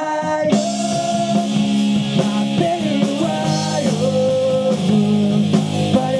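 Live rock band playing electric guitar and drum kit. About half a second in, the cymbals and full band come back in after a brief drop, then play on steadily.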